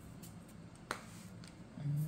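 A single sharp click about a second in, over a faint low hum; a voice begins near the end.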